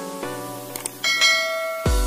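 Subscribe-button animation sound effects over background music: two short clicks, then a bell chime about halfway through that rings for about a second. A heavy electronic bass beat comes in near the end.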